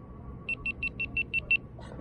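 GoPro Hero 10 camera beeping: seven quick short high beeps in a row, about six a second, the series a GoPro gives as it powers off.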